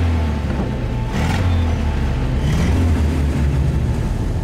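WWII-era military jeep engine running with a low, steady rumble, revved briefly about a second in and again a little past two and a half seconds.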